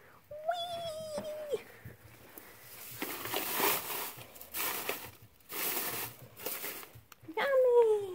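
Dry hay rustling and crackling in repeated bursts as a hand grabs and bundles a handful of timothy hay, from about three seconds in. A drawn-out vocal tone sounds shortly after the start, and a louder falling one near the end.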